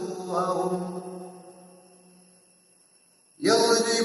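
A man reciting the Quran in Arabic in a melodic chant. A drawn-out note at the end of a phrase fades away about two seconds in. After a brief pause the recitation resumes loudly near the end.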